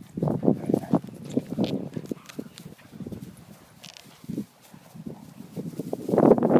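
Two Doberman Pinschers scuffling over a ball, their mouths and paws making a run of short, irregular thuds and knocks. The knocks are densest in the first second and scattered after that.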